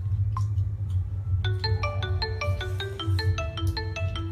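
A marimba-like electronic tune of quick, short, bright notes starts about a second and a half in, over a steady low hum.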